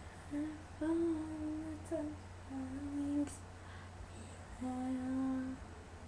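A girl humming a slow melody in three held phrases, the longest about a second in and the last near the end, over a steady low hum.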